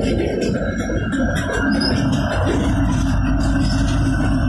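A Norfolk Southern EMD SD70ACe diesel locomotive, running as a unit within the freight train, passes close by: a steady engine drone over the deep rumble of wheels on rail.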